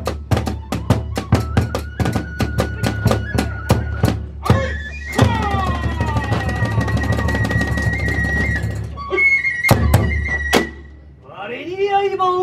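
Kagura hayashi ensemble: a taiko drum beaten in quick, even strokes with small hand cymbals, under a held note on a bamboo transverse flute. About five seconds in the playing thickens into a dense roll and the flute note rises. The music stops just before the end, when a man's voice begins declaiming.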